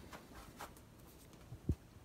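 Faint rustling and handling noise, with a soft knock near the end.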